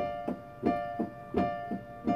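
Electric keyboard played in a piano voice: a chord struck again and again in a steady rhythm, about three strikes a second, alternating stronger and weaker.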